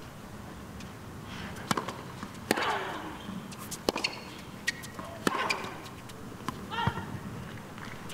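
Tennis ball struck by rackets in a rally, five sharp hits about a second and a half apart, several of them followed by a player's grunt.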